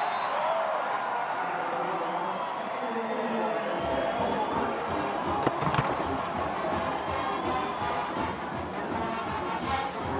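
Stadium crowd cheering a touchdown, with music with a steady beat coming in about four seconds in.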